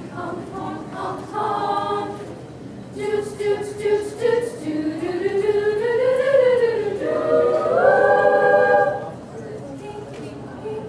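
Women's madrigal choir singing a cappella: the melody climbs and falls in the middle, then closes on a held chord that stops about nine seconds in.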